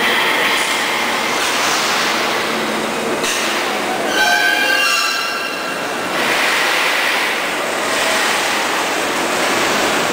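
Continuous loud machinery noise on a rail coach factory shop floor. About four seconds in comes a high metallic squeal of several pitches at once, lasting about a second and a half.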